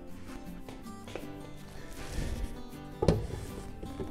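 Background music, with handling noise and one heavy thump about three seconds in as a cast-iron tractor suitcase weight is moved on the bench scale.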